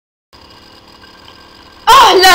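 Silence, then from about a third of a second in a faint steady background hum with a few thin steady tones: room noise of the recording. Just before the end a child's voice starts speaking loudly.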